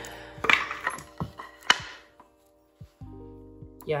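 Small steel bolts, nuts and washers clinking and tapping as they are handled and set down on a concrete floor, with a few sharp clicks in the first two seconds. Background music plays under it.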